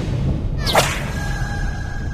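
A sharp whip-like swish sound effect about two-thirds of a second in, over a low rumbling dramatic music bed. After it, a faint high held tone rings on.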